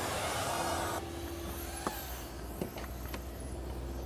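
A car engine running steadily with a low rumble, with two faint clicks in the middle.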